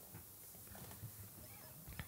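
Very quiet room tone with a faint low hum and a few small clicks and rustles: handling noise from a player settling his hands on an acoustic guitar before the first strum.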